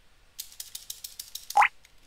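Computer keyboard typing: a quick run of keystroke clicks. About one and a half seconds in comes a short rising whistle-like tone, the loudest sound.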